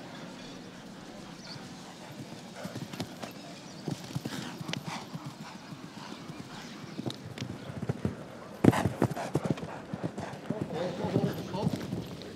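A show-jumping horse's hooves beating on turf at the canter, an irregular run of dull thuds that grows busier from about the middle, with the loudest strike about nine seconds in.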